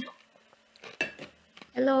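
A few short, light clicks and clinks of small hard objects being handled, the loudest right at the start and a small cluster about a second in. A woman's voice says "hello" near the end.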